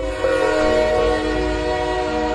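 Vande Bharat Express train's horn sounding one long, steady multi-note chord as the train comes into the platform.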